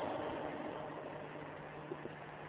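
A pause in the talk that holds only a steady background hiss with a faint low hum: the recording's own noise floor.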